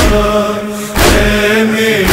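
Noha recitation: a male reciter chanting a slow lament in long held notes, over a heavy beat that falls about once a second.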